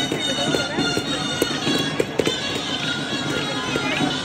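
Children's stick dance: wooden dance sticks clacking together in sharp strikes, several of them around the middle, over wind instruments playing a folk dance tune. Crowd voices murmur underneath.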